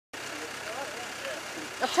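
Land Rover Discovery 2 Td5's five-cylinder turbodiesel idling steadily, with faint voices in the background; a man starts speaking near the end.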